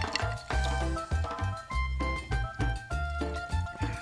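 Background music with a steady bass pulse under a melody of held notes.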